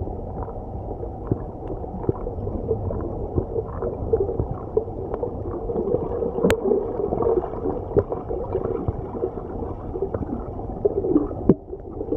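Underwater sound heard through a camera's waterproof housing: a steady, muffled wash of water noise with gurgles and a few sharp clicks, one about six and a half seconds in.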